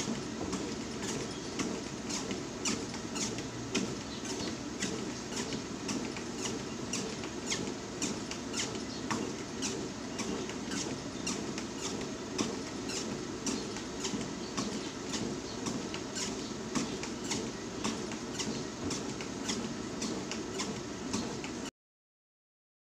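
Motorized treadmill running at walking speed: a steady hum of motor and belt, with footfalls striking the deck about twice a second. It cuts off suddenly near the end.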